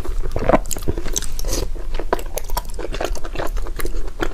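Close-miked chewing and wet mouth sounds of eating soft food, with many short, irregular smacks and clicks.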